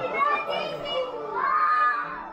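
Children's voices talking and calling out, some of them high-pitched.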